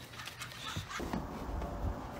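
English bulldogs running on a wooden deck, with dog sounds and patter. About halfway through the sound changes to a low rumble.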